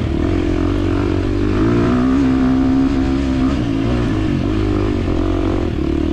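2023 KTM 350 XC-F dirt bike's single-cylinder four-stroke engine running under way, its revs rising and falling with the throttle, highest about two to three seconds in.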